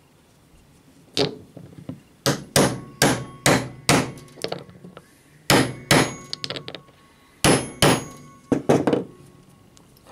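Small hammer tapping a metal mould to knock an epoxy-cast copper commutator shroud out of it: a dozen or so sharp metallic taps in irregular groups, each ringing briefly.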